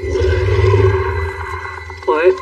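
A low, muffled rumbling drone from an animated film's soundtrack. It swells over the first second and then slowly fades, with a hazy noisy texture above it.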